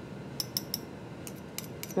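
A few faint, light clicks and scrapes of crystals being scraped into a dish on an analytical balance, a cluster in the first half and a few more near the end.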